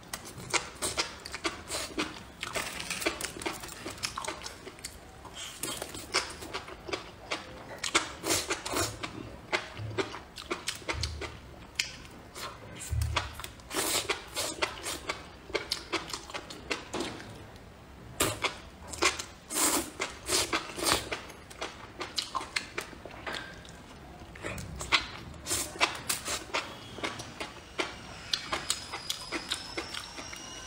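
Close-miked eating: spicy enoki mushrooms bitten and chewed, with many irregular wet, crisp clicks and smacks of the mouth.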